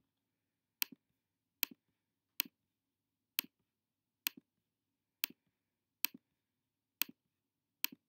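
Computer mouse button clicking about once a second, nine sharp clicks in a row, each with a faint second click just after it, as keys on an on-screen calculator keypad are pressed one by one.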